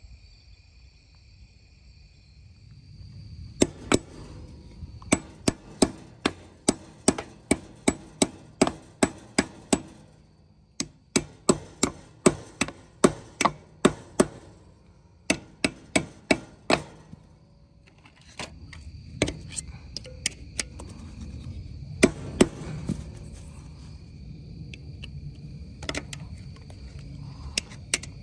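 Hammer striking a steel punch against a ground-through lug nut and stud on a wheel hub, driving them out: a quick run of ringing metal blows, about two a second with short pauses, then a few scattered blows near the end. The stud spins in the hub because its pressed-in teeth no longer grip.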